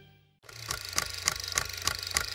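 The end of a music fade, then after a brief gap a film-projector sound effect: a steady mechanical clatter with sharp clicks about three times a second over a low hum.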